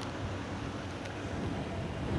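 Steady background noise: a low rumble with a faint hiss, with no distinct event.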